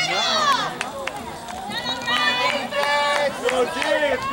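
Girls' voices shouting and calling across a lacrosse field, several high-pitched calls overlapping, with long held shouts in the second half and a call of "here" at the very end.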